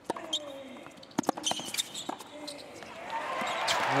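Tennis rally: a ball struck back and forth with rackets, a sharp crack roughly every half second to second. About three seconds in, crowd cheering swells up as the point is won.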